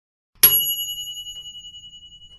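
A single bell ding, the notification-bell sound effect of a subscribe animation: struck once about half a second in, then ringing on in a few clear high tones that fade slowly with a slight wavering.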